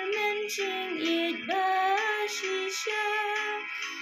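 A young woman singing a slow gospel song, her voice gliding into and holding long sustained notes.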